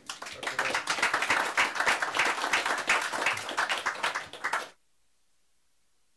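An audience applauding: dense clapping of many hands that cuts off suddenly about three-quarters of the way through.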